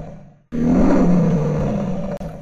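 Lion roaring, a recorded sound effect: one roar fades out about half a second in, and after a short silence a second long roar follows.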